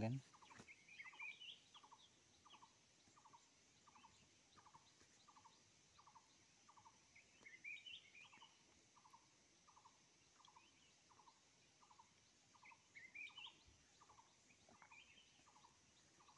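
Faint background bird calls: one short call repeated at a steady pace, about three calls every two seconds, with a few brief higher chirps from another bird now and then.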